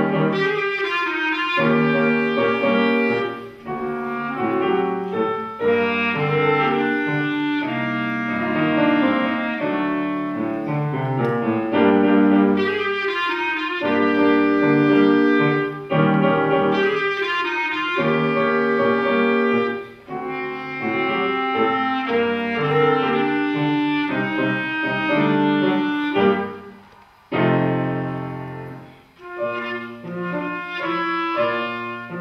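Clarinet playing a tango melody with grand piano accompaniment, in phrases separated by brief breaks. There are two short gaps near the end.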